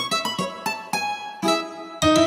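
Instrumental break in a children's nursery-rhyme song: a plucked string instrument plays a quick run of short notes, with no singing.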